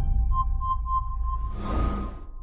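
Electronic intro sound for a countdown animation: a deep low drone under four short high beeps, about three a second, then a whoosh near the end.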